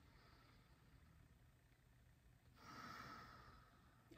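A woman's single slow, deep breath, soft and lasting about a second, heard about two and a half seconds in after near silence.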